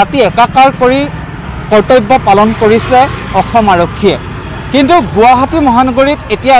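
A man speaking, with a steady low vehicle hum beneath the voice.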